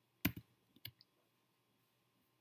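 Computer keyboard keystrokes: a quick pair of key clicks, then two more about half a second later, as a line of code is finished.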